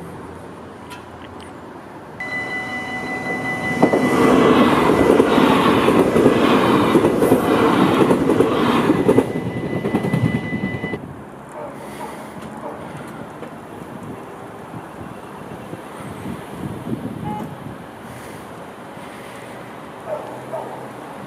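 An electric train passing on the rails. A steady high whine starts about two seconds in, and a loud rolling rumble with an even beat follows from about four to nine seconds, then fades. The whine cuts off suddenly a little after ten seconds, leaving quieter outdoor background noise.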